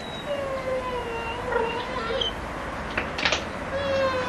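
Giant Schnauzer puppy whining: a long, drawn-out whine that sinks slightly in pitch over about two seconds, a couple of short sharp sounds about three seconds in, then another long whine starting near the end.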